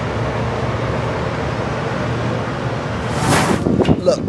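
Steady outdoor rushing noise with no voices, then a short whoosh about three seconds in, like an editing transition effect.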